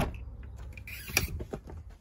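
A shed door being opened and gone through: a few clicks and scrapes from the handle and latch, the sharpest about a second in, over low rustling from the handheld phone.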